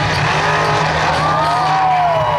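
Mega truck engine revving hard under load as the truck climbs a dirt mound, its pitch rising through the second half and starting to fall near the end.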